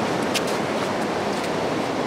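Surf washing steadily onto a sandy beach, an even rushing sound. A brief high click comes about half a second in.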